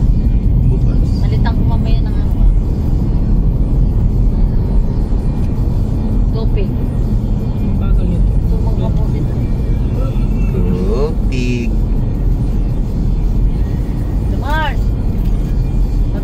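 Steady road and engine rumble heard from inside a moving car's cabin, with brief snatches of voices and music over it.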